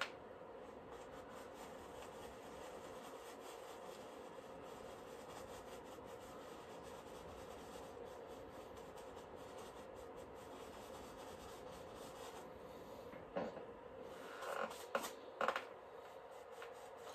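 Faint rubbing of a paintbrush blending oil paint on canvas, with a few louder brush strokes in the last few seconds.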